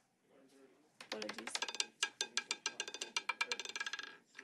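Roulette ball dropping off the track into the wheel and clattering rapidly over the metal pocket frets, a fast run of sharp clicks that begins suddenly about a second in and continues as the ball settles toward its pocket.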